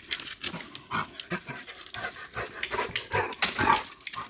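A large dog panting in short, irregular breaths.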